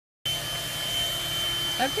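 Handheld 12-volt car vacuum cleaner, powered from the cigarette lighter socket, running steadily with a constant high-pitched whine over a low motor hum.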